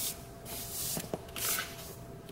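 Hands sliding and rubbing over paper planner pages while handling stickers: three short papery swishes, with a couple of light taps about a second in.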